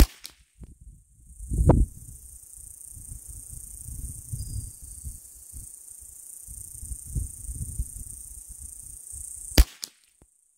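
Two sharp .22 rifle shots, one right at the start and one near the end, with a steady high insect buzz in between.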